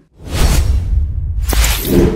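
Whoosh sound effects for a logo animation: a swelling swoosh with a deep bass rumble, then a sharp click about one and a half seconds in and a second bright whoosh ending in a few short musical tones.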